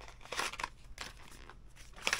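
White cardboard box packaging being handled and slid, giving a short dry rustling scrape about half a second in and a fainter one about a second in.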